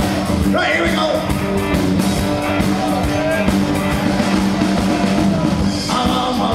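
Live band music: strummed acoustic guitar, banjo, bass and drums playing together, with a male voice singing over it in places.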